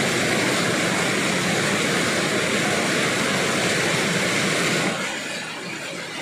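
Waterfall water rushing and splashing over rock close to the microphone, a steady loud roar of white water that drops noticeably in level about five seconds in.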